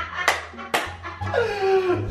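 Two sharp smacks about half a second apart, then a person's voice sliding down in pitch.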